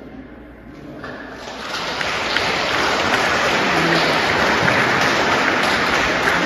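A crowd applauding, building up over the first two seconds and then holding steady.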